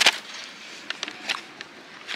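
Kraft cardboard takeaway box being opened by hand: the interlocking lid flaps are pulled apart, giving a sharp click at the start, then a few light clicks and scrapes of cardboard.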